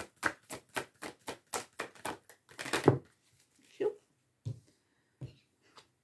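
A deck of oracle cards being shuffled by hand: a fast run of crisp card snaps, about five or six a second, for roughly three seconds, then a few scattered softer sounds as the shuffling stops.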